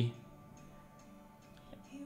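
Faint band music playing back through the computer, with a few light ticks in its middle part.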